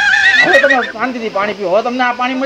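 A man's voice speaking in an animated, warbling tone, the pitch swooping up and down.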